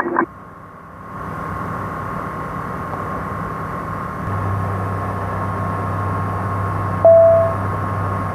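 Light-aircraft cockpit noise heard through the headset and radio audio: a steady engine drone with radio hiss that strengthens after the first second. A short beep sounds about seven seconds in.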